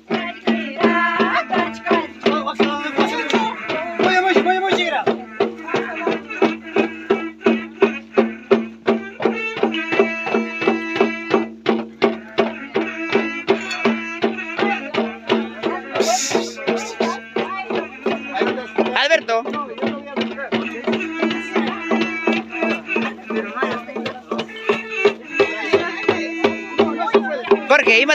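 Andean festival music: small tinya hand drums beaten in a steady rhythm, about three strokes a second, under voices singing and a held tone.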